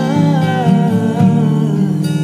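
A woman's voice singing a wordless line that slowly falls in pitch, over fingerpicked acoustic guitar notes.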